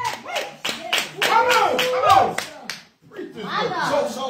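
Hand clapping in a steady rhythm, about three claps a second, under a man's voice over a microphone that sweeps up and down and holds long notes, as in singing. Both stop briefly near three seconds in.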